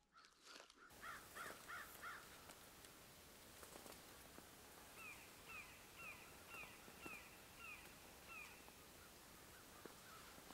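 A bird calling outdoors: a quick run of four calls about a second in, then a steady series of about eight down-slurred calls, roughly two a second, with a few faint ticks between them.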